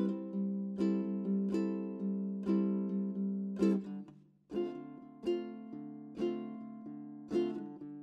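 Background music on a plucked string instrument: a slow, gentle melody of single plucked notes and chords, broken by a brief pause about four seconds in before it carries on.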